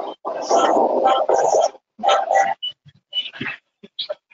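Loud, harsh background noise coming through a participant's unmuted microphone on an online call. It comes in three bursts: a long one of about a second and a half near the start, then two shorter ones.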